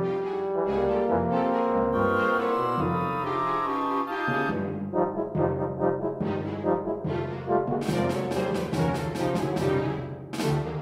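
Orchestral music led by brass: sustained chords for the first four seconds, then shorter repeated notes, ending in a quick run of sharp repeated strokes.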